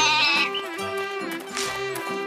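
A cartoon goat bleating once with a quavering voice at the start, over light children's background music.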